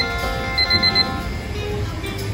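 Digital alarm-clock beeping: a run of quick high beeps ending at the start, then another run of four about half a second in, over background music.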